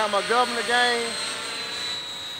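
Outrage Fusion 50 electric RC helicopter flying overhead, a steady high whine from its motor and drivetrain at a governed head speed of 1,953 RPM, dipping slightly in pitch near the end. A man's voice talks over it in the first second.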